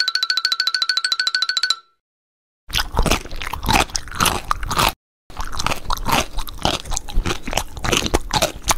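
A cartoon sound effect opens: a rapid buzzing trill at one steady pitch, lasting under two seconds. After a short silence come two long stretches of dense, sharp crunching and crackling: crisp ridged potato chips being crunched, added as an ASMR eating effect.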